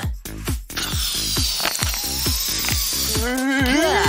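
Upbeat background music with a steady beat, under a long airy hiss of a balloon being blown up inside a plastic bottle. Near the end a man's drawn-out, rising 'ooh' of surprise begins.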